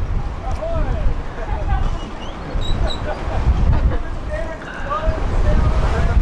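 Indistinct conversation among people on an open deck, with wind buffeting the microphone as a gusty low rumble.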